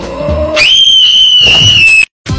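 Music with a beat that is cut off about half a second in by a loud, shrill, high-pitched tone. The tone is held for over a second, sinks slightly in pitch, and stops abruptly.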